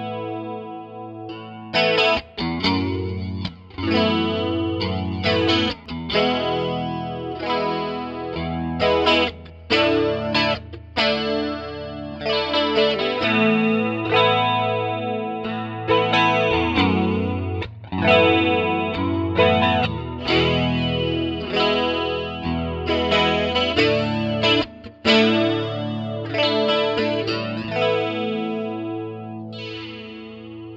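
Electric guitar played through a Roland Jazz Chorus 77 stereo combo amp with its chorus effect, chords ringing out one after another. It is picked up by a pair of small-diaphragm condenser mics, in NOS placement and then, partway through, in XY placement.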